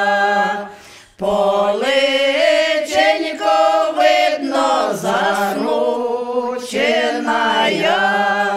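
A women's ensemble sings a traditional Ukrainian village folk song a cappella in several parts, long notes held and sliding together. The voices break off briefly for a breath about a second in, then resume.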